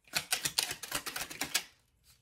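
A tarot deck being shuffled: a quick run of crisp card clicks lasting about a second and a half.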